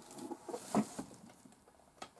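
Small plastic Lego pieces being handled on a table: a few light clicks and scratches, bunched about half a second to a second in.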